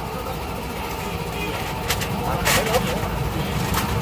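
A running engine nearby gives a steady low rumble. Over it come a few sharp metallic clicks as clutch parts are handled, and faint voices in the background.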